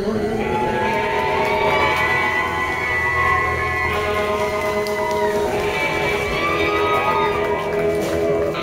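Live rock band playing loud and steady: electric guitar, bass and drums, with a singer holding long, wavering notes into the microphone.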